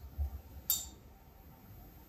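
A small metal examination instrument clinking once, a sharp click about two-thirds of a second in, with soft handling bumps just before it.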